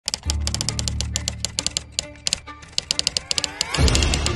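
Rapid typewriter keystroke sound effect, about eight clicks a second with a short pause in the middle, over a low sustained music note. A swell of music builds near the end.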